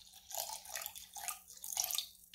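White vinegar pouring in a thin stream from a plastic gallon jug into a glass measuring cup, an irregular splashing trickle into the liquid already in the cup.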